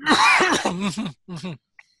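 A man chuckling and clearing his throat: a loud noisy voiced burst, then a few short voiced pulses, over about a second and a half.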